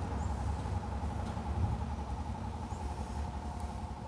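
Steady low rumble with a faint constant hum underneath: outdoor background noise with no distinct event.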